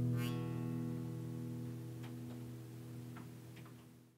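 Acoustic guitar's final chord ringing out and slowly dying away. A brief high squeak comes about a quarter second in, and a few faint ticks come in the second half.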